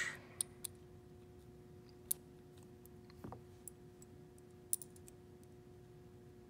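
Scattered small, sharp metallic clicks from a steel pin punch and a pistol's sear housing block as a pin is pushed out by hand, about half a dozen ticks spread unevenly. A faint steady hum runs underneath.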